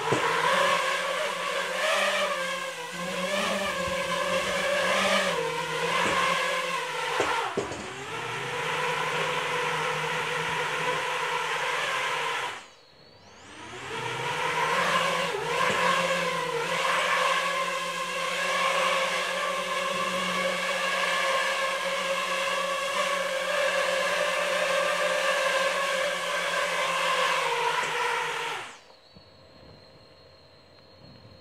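Racing quadcopter's four T-Motor F40 II 2600kv brushless motors spinning triple-blade 5-inch props in a hover: a steady buzzing whine that wavers in pitch for the first several seconds. About halfway it drops away almost to nothing and spools straight back up, then holds steady until the motors cut out shortly before the end.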